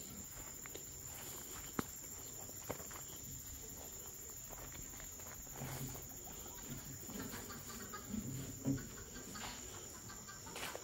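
A hen clucking softly now and then, with a couple of light clicks about two and three seconds in.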